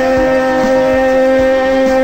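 Live Greek laïko band holding the song's final note: one long, steady sustained tone over light drum hits.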